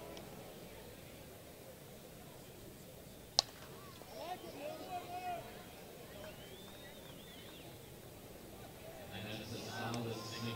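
A single sharp crack of a softball bat hitting the ball a little over three seconds in, followed by voices shouting over a low background of ballpark noise.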